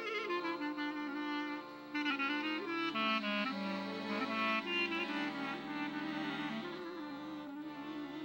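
Clarinet playing a moving melody over sustained accordion chords, an instrumental passage with no voice.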